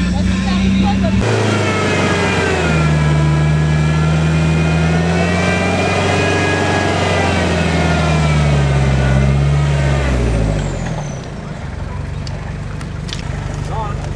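An off-road 4x4's engine pulling under load through deep mud, its pitch rising and falling slowly as the revs change. The sound changes abruptly about a second in, and the revs fall away and the engine quietens about ten seconds in.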